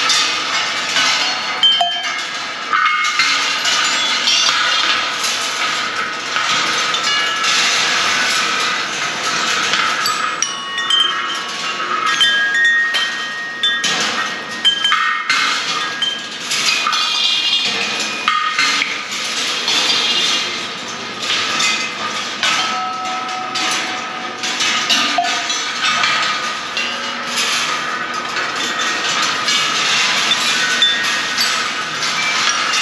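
A George Rhoads rolling-ball sculpture running: balls keep clattering and knocking along its wire tracks and lifts, and set off short metallic bell and chime tones at many different pitches, one after another.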